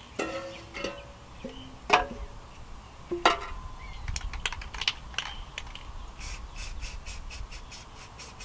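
Aerosol spray-paint can being shaken, its mixing ball rattling about four times a second, starting about six seconds in. Earlier, two sharp knocks of tin cans being moved on concrete.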